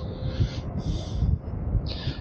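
Wind buffeting the microphone in uneven low rumbling gusts, with three short hisses, the last just before speech resumes.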